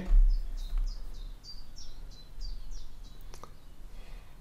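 A small bird singing: a quick run of short, high, falling chirps, about four a second, lasting roughly three seconds, then a single light click.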